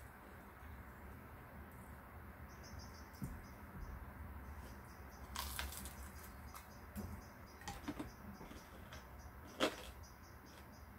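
Faint close-up eating sounds of fried chicken: chewing with scattered sharp mouth clicks and crunches from about halfway through, the sharpest one near the end, over a steady low hum.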